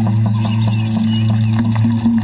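Background music with a steady, held low note.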